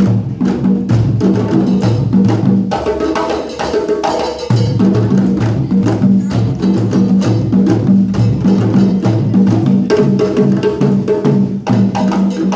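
A circle of djembes played by hand together in a steady, driving rhythm, with a drum kit played with sticks behind them.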